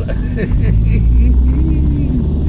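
Car driving slowly over a rough, potholed dirt road in a low gear, heard from inside the cabin: a steady deep rumble of engine and road.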